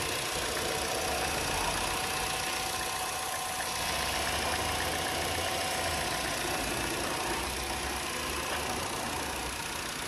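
Vauxhall Insignia's Ecotec engine idling steadily, heard close up with the bonnet open.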